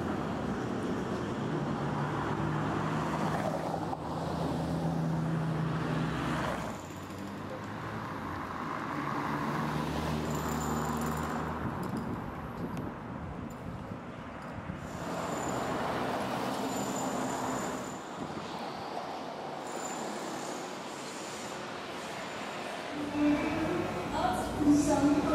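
Street traffic noise: vehicle engines running and passing, a steady rumble and hiss whose character shifts several times.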